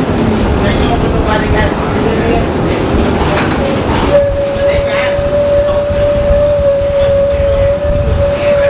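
Interior sound of a 1993 Orion V transit bus underway, its Detroit Diesel 6V92 engine and Allison HTB-748 transmission running. About four seconds in the rumble drops away and one steady high-pitched whine sets in and holds.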